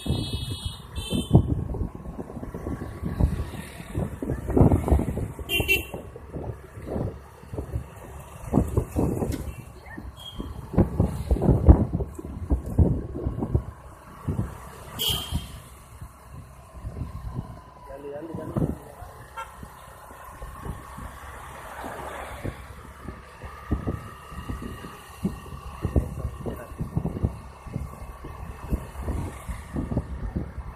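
Wind buffeting a moving microphone over road and traffic noise, with a faint steady whine throughout. A short pulsed horn toot sounds right at the start.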